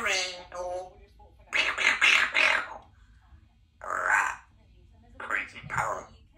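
Congo African grey parrot chattering in speech-like mumbles and calls, four short bursts with pauses between, the first a pitched, voice-like call.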